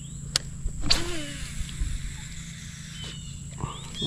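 Quiet outdoor ambience at a pond bank: a steady low hum with two sharp clicks in the first second and a few faint high chirps.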